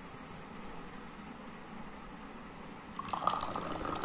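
Faint room tone, then about three seconds in, Moroccan tea poured from a height out of a metal teapot in a thin stream, splashing into a small drinking glass as it fills.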